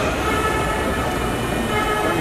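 Steady, loud background din: an even rumble and hiss with a few faint steady tones, with no distinct events standing out.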